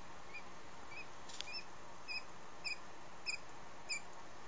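Newly hatched Japanese quail chick peeping: short, high chirps a little under two a second, getting louder after about a second and a half.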